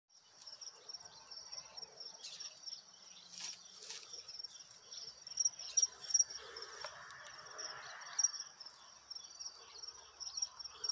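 Crickets chirping in a steady, rapidly pulsing high trill, with a few sharp clicks and some rustling between about three and eight seconds in.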